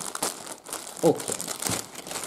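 A clear plastic bag crinkling as it is handled and opened, unwrapping a skein of yarn.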